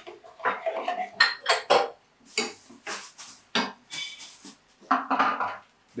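Metal spoon scraping and clinking against a metal cooking pot as a thick vegetable sauce is stirred, in a run of irregular strokes.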